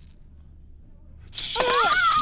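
Low hum for just over a second, then a loud rattle starts suddenly, shaken fast, with a high voice yelling over it.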